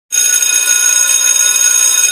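Electric school bell ringing: one steady, loud metallic ring with many high overtones, lasting about two seconds and stopping abruptly.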